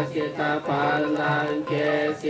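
Theravada Buddhist chanting of Pali verses by a group of voices in unison, on held notes that step and glide from one pitch to the next.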